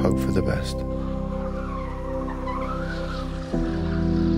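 Background music holding sustained chords, with a car's tires squealing and skidding as the car spins.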